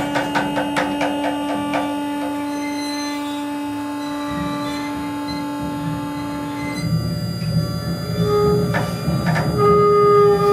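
Free-improvised music for percussion, double bass, guitar and electronics. A long held tone runs under quick, light strikes for the first two seconds. At about seven seconds a low, rough rumble and new held tones come in, with a few more strikes.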